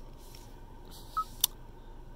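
A short electronic beep from the Hyundai Elantra's infotainment touchscreen confirming a tap as the screen opens its menu, followed a moment later by a sharp click.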